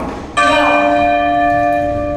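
A bell-like chime of several steady tones starts suddenly about a third of a second in, holds at an even level for about two seconds, then stops.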